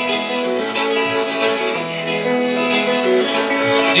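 Harmonica playing long held notes over guitar accompaniment in a country song.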